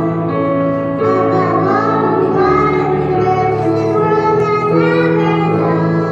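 Two young children singing a song together into microphones, accompanied by an electronic keyboard playing held chords.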